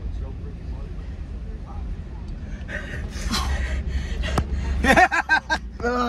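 Men shouting and whooping in excitement inside a car cabin, over the car's low steady rumble. There is a single sharp smack a little after four seconds in, and the loudest, highest yells come in the last second.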